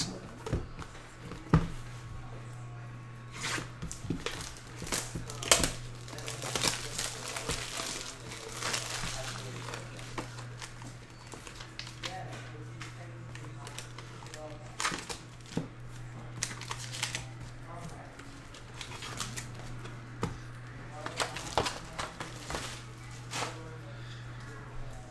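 Plastic trading-card pack wrappers crinkling and tearing as a hobby box of packs is opened and handled, with scattered clicks and rustles. A steady low hum runs underneath.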